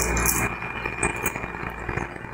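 A person biting into and chewing a crunchy cracker topped with melted cheese and tomato: a run of small, irregular crisp crunches over a steady low background hum.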